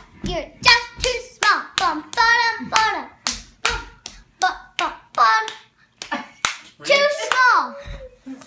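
Rhythmic hand clapping, about two to three claps a second, with short bursts of a child's voice between the claps.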